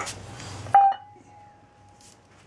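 A stainless steel pet bowl struck once, sharply, about three-quarters of a second in, leaving a clear ringing tone that fades over about a second. A softer knock comes at the start.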